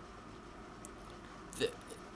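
Low steady room hiss, then about a second and a half in a single short, clipped vocal sound from a man: the false start of a word.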